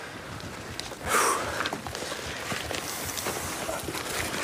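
A donkey snorts once, a short noisy blow through the nose about a second in, over low scuffling on the ground.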